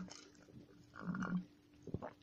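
A man's brief, quiet, low grunt-like throat sound about a second in, followed by a soft mouth click just before the end.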